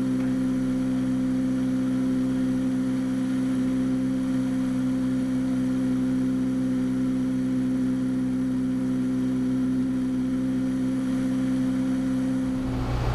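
Cessna 172's single piston engine and propeller running steadily in cruise, a constant drone with a strong low tone.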